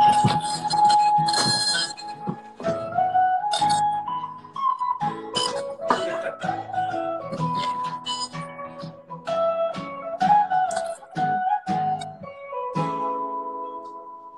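Electric and acoustic guitars playing a song together, strummed chords under a high, gliding melody line. The playing winds down near the end.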